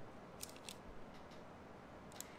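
Near-quiet room tone with a few faint, short clicks and ticks, small handling noises of the painting work.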